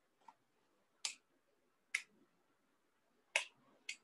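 Five short, sharp clicks at uneven intervals, the first one faint, over a quiet room.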